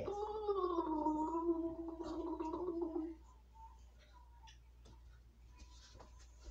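One long held note, sliding down slightly at first and then steady, made by a person with both hands cupped over the mouth. It cuts off a little after three seconds, and a few faint clicks follow.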